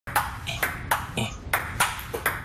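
Table tennis ball in a fast rally, clicking off paddles and the table about three times a second, six or seven sharp hits in all.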